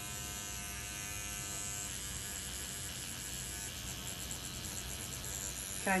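Electric microneedling pen buzzing steadily as its needle tip is worked over the skin of the face during micro-channeling.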